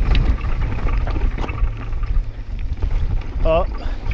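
Mountain bike rolling fast down a dirt trail: steady wind rumble on the microphone, with tyre noise and scattered clicks and rattles from the bike over loose dirt and stones. A brief wavering voice-like call sounds about three and a half seconds in.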